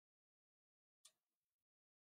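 Near silence: a pause in the narration with no audible sound.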